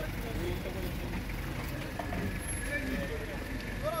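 A vehicle engine running with a steady low rumble, with people's voices talking in the background and a voice calling out near the end.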